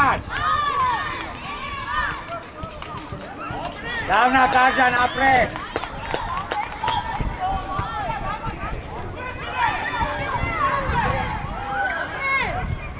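Voices shouting and calling during a football match, with one loud, drawn-out shout about four seconds in and more calls near the end; a few short sharp knocks come in between.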